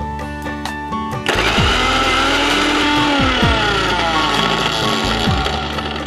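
Electric mixer grinder running for about four seconds, starting about a second in, grinding a paste of garlic, ginger and cashews; its pitch falls as it winds down near the end. Background music with plucked guitar plays throughout.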